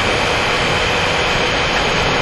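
A loud, steady rushing noise with no clear pitch, unchanging throughout.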